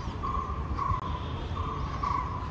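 A bird calling a short note over and over, about twice a second, over a steady low rumble of traffic.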